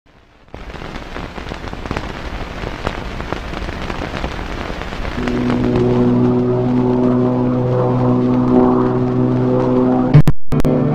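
Crackle and hiss of an old film soundtrack, full of clicks and pops, starting about half a second in. About halfway through, a steady sustained drone of several held tones comes in and grows louder.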